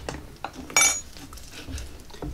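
A single light clink of kitchenware with a brief high ring about three-quarters of a second in, with soft knocks of a knife cutting chicken on a wooden cutting board.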